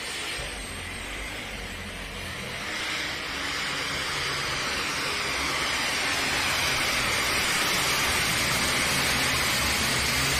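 John Deere pulling tractor's engine running flat out under load as it drags the weight sled down the track, getting louder over the run.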